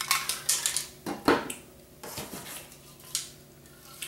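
Metal Ironlak spray paint cans clinking and knocking against each other as they are handled and set down. A quick cluster of clatters comes in the first second and a half, the sharpest about a second in, then a few lighter knocks.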